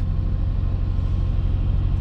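A steady low hum with a faint hiss above it, unchanging throughout.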